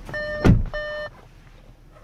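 Audi SQ5 cabin warning chime: a repeating multi-note tone about twice a second that stops about a second in. A heavy thump about half a second in is the loudest sound.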